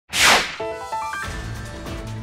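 An intro sting: a sharp swoosh sound effect, then a quick run of rising musical notes settling into sustained music.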